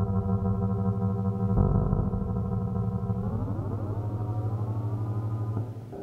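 Electric guitar processed through Emona TIMS PCM encoder and decoder modules: held notes with a dull, band-limited tone lacking any high end. About halfway through the pitch slides upward and settles higher, and the sound drops away near the end.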